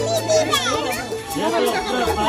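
High-pitched children's voices calling and chattering over a music track.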